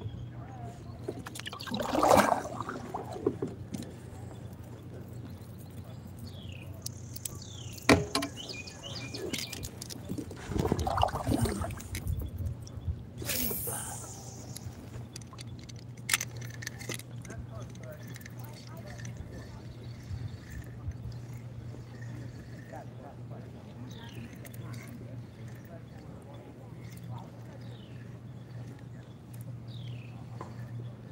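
Kayak on a lake: a few short bursts of water and handling noise against the hull, with a sharp click about eight seconds in, over a steady low hum. Faint bird chirps come and go.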